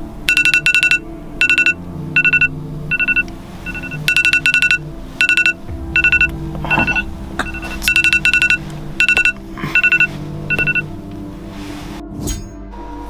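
Smartphone alarm going off: loud electronic beeps in quick groups of two to four, repeating about twice a second until shortly before the end, over a soft music bed.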